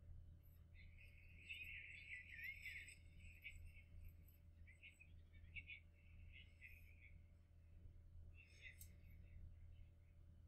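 Near silence: a low room hum with faint, thin, voice-like sounds coming and going, most between about one and a half and three seconds in.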